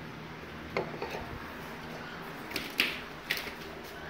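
Several sharp clicks and knocks, irregularly spaced, the loudest about three seconds in.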